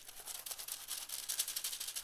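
A graphite pencil scratching on tracing paper in quick back-and-forth hatching strokes, several a second.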